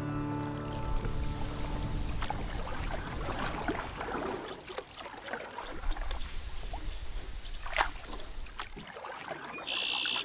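Background music fades out within the first half second, giving way to kayak paddling sounds: water splashing and trickling off the paddle and the hull brushing through marsh grass, with scattered splashes and clicks. A short high bird call sounds near the end.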